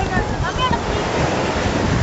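Surf washing on the shore under wind buffeting the microphone, with a few brief distant voices calling in the first second.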